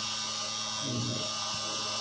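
Small DC motor running with a steady whir, powered by a homemade six-cell carbon-carbon battery pack at about 9 volts.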